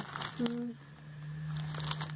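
Light crinkling of a small plastic bag being handled, a few scattered crackles near the start and end, with a brief hummed "mm" about half a second in and a steady low hum underneath.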